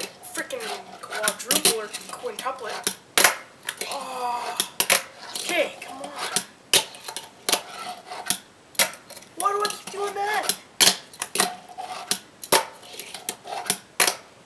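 A fingerboard snapped and landing again and again on a wooden tabletop: sharp, irregular clacks of the little deck and wheels on wood during repeated double-flip attempts.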